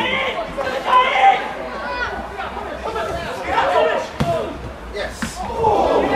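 Players and spectators shouting over each other during a football goalmouth scramble, with a few sharp thuds of the ball being kicked, one about five seconds in.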